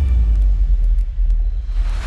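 Deep, loud rumble sound effect in a show soundtrack, entering on a falling sweep and holding steady for nearly two seconds, with a few faint ticks in it.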